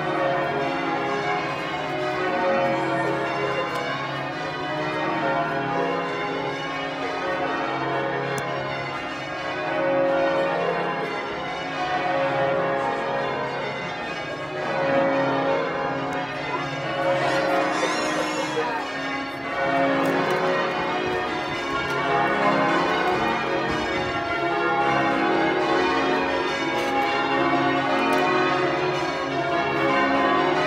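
Church bells ringing changes: several bells of different pitches striking in a steady, overlapping peal. A brief high wavering sound cuts through about 17 seconds in.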